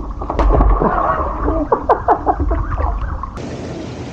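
Water splashing and sloshing in a hot tub right at a water-spattered action camera, with a heavy low rumble and many short knocks and gurgles. About three and a half seconds in it gives way to the steady hiss of the hot tub's jets churning the water.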